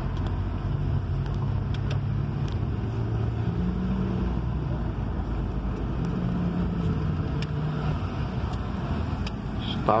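Car engine and road noise heard from inside the cabin while driving slowly in city traffic: a steady low rumble with an engine hum that rises and falls a little in pitch.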